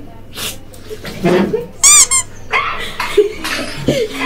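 A dog gives a short, high-pitched whine in two quick notes about two seconds in, the loudest sound here, with brief voices around it.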